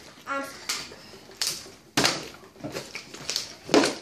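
A partly filled plastic water bottle, tossed in a bottle flip, strikes the wooden tabletop with a sharp knock about halfway through and falls onto its side, a failed flip. A second, heavier knock comes near the end.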